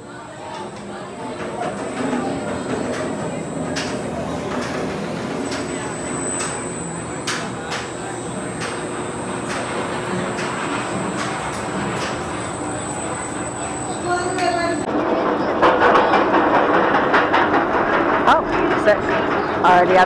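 B&M floorless roller coaster train running through its station amid voices. About fifteen seconds in, a louder mechanical clatter begins: the train climbing the chain lift hill, with the chain and anti-rollback ratchet clicking.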